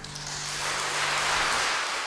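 Audience applause that begins as the last chord of the song dies away, swelling to its loudest about a second and a half in.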